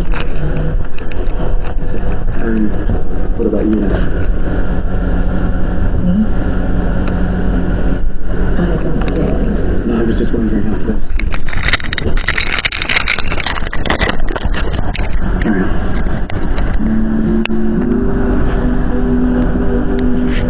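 A steady low rumble under muffled voices, with a cluster of sharp clatters a little past halfway and held steady tones near the end.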